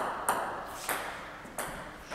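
Celluloid-type plastic table tennis ball bouncing after a serve: four sharp clicks, spaced further apart as it goes.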